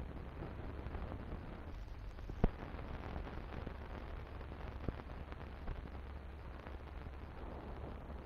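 Surface noise of an old optical film soundtrack: steady hiss and a low hum, with scattered crackles and one sharp pop about two and a half seconds in.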